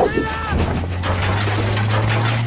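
Movie battle effects: crashing and shattering debris from an explosion, with a short shout near the start, over a low steady drone that rises slightly near the end.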